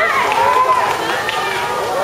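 Several high-pitched voices shouting and cheering over one another, with a steady haze of background noise.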